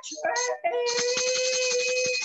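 A woman singing a gospel chorus unaccompanied, breaking briefly and then holding one long steady note through most of the rest.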